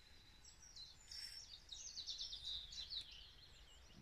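A small bird singing faintly, a fast run of high chirping notes. There is a short hiss of noise about a second in.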